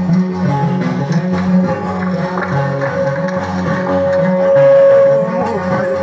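Ngoni, a West African calabash harp, plucked in a repeating low pattern, with a long steady note that swells to the loudest point about four seconds in.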